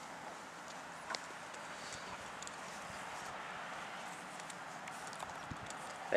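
Faint, steady outdoor background noise with a few scattered light clicks, one sharper click about a second in.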